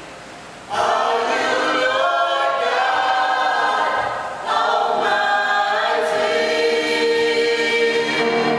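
A small gospel worship team singing together in harmony, holding long notes. The voices come in together under a second in after a brief pause, and break off briefly about four seconds in before going on.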